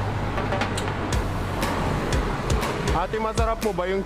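Busy shop-counter background noise with a low hum and a few light clicks and knocks, then a voice with rising and falling pitch in the last second.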